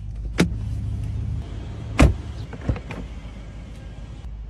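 Mercedes-Maybach car door being opened from inside: a latch click about half a second in, a loud clunk about two seconds in and two lighter knocks just after, over a low steady hum.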